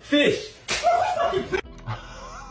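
A man's loud wordless outbursts, two in quick succession, a short one and then a longer one: a disgusted reaction to smelling sardines held under his nose.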